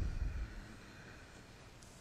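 Faint room tone of a meeting chamber, with a brief low rumble in the first half second.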